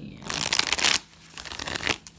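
A tarot deck being shuffled by hand: two bursts of shuffling, about a second each, the second cutting off at the end.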